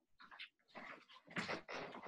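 A dog making faint, short vocal sounds in a series of bursts, loudest about a second and a half in.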